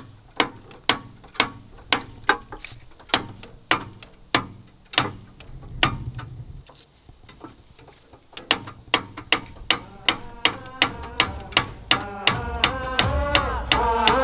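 A metal tool tapping on the starter motor of an old John Deere crawler loader while the key is worked, sharp metallic strikes about two a second, then a short pause, then quicker taps about three a second. This is the old trick for freeing a stuck starter, and it does not crank over. Music fades in near the end.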